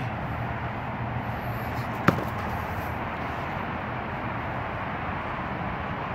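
Steady low outdoor background hum, with a single sharp knock about two seconds in.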